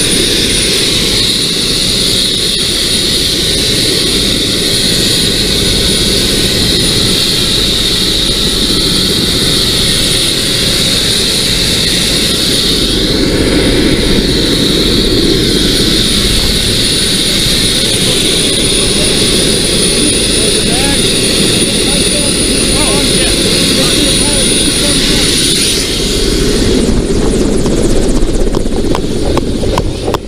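Helicopter running at close range: a steady, loud rotor and engine noise with a constant high whine.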